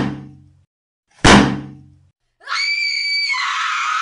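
Two sudden dramatic sound-effect hits, each with a low ringing tail that dies away within a second. Just past halfway a long, high-pitched shriek comes in, holds steady, then drops to a lower pitch near the end.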